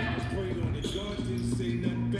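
Basketball being dribbled on a hardwood gym floor, under voices and background music.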